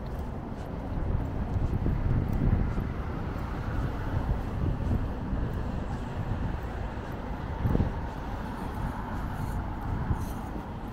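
Street ambience of road traffic passing on a multi-lane city road: a steady low rumble of engines and tyres that swells a couple of times as vehicles go by.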